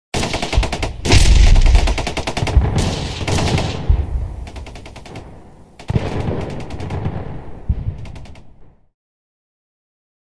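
Sound effect of rapid machine-gun fire, loudest from about one to two seconds in, with a fresh volley about six seconds in, then fading and stopping about a second before the end.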